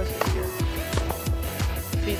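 Background music with a steady, quick drum beat, about four strikes a second, under held synth-like tones.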